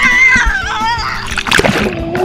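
Pool water splashing close around a waterproof camera at the surface, with a burst of splashing about one and a half seconds in as a child plunges under.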